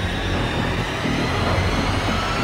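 Low, steady rumbling drone of suspense music, with a faint thin high tone held above it.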